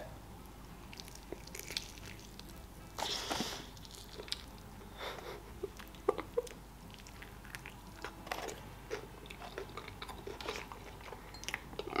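A person biting and chewing fried chicken wings close to the microphone: quiet scattered crunches and mouth clicks, with the largest crunchy bite about three seconds in.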